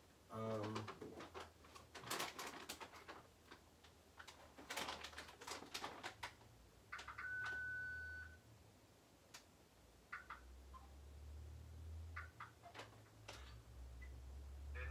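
Clicks, taps and handling noise from an OrCam MyEye 2 wearable camera reader being handled and tapped to take a picture. There is one steady electronic beep lasting about a second, about seven seconds in, and a brief low hum near the start.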